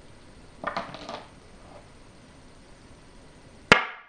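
Go stones clicking against one another as a hand gathers them, then a single sharp click near the end as a black go stone is set down on a wooden go board, with a brief ring.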